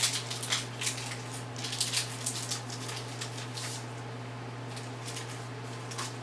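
Foil booster-pack wrapper of a Pokémon TCG Battle Styles pack crinkling and tearing as it is opened, a quick run of sharp crackles that dies away after about four seconds.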